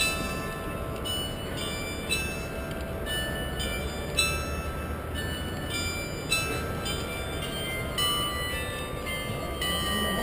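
Background music of chiming, bell-like notes that change every second or so, over a steady low rumble.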